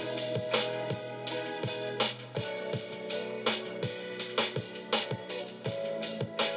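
Music with guitar and a steady beat, about two beats a second, played through a JBL Clip 4 portable Bluetooth speaker as a sound test, with little deep bass.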